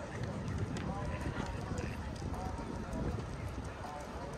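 Busy beachfront boardwalk ambience: footsteps on a concrete path, with the indistinct voices of people nearby and a low rumble on the microphone.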